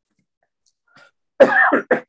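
A man's short cough near the end.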